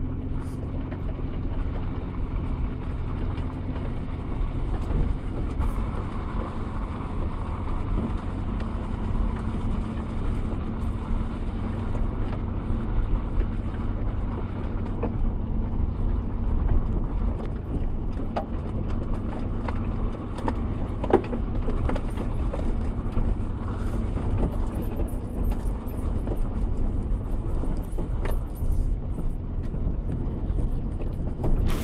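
Vehicle engine hum and tyre and suspension noise heard from inside the cab while driving on a rutted dirt road, with scattered knocks and rattles from the bumps.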